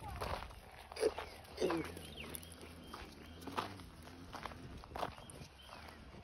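Footsteps on a sandy, gravelly dirt path: soft, irregular steps at a walking pace.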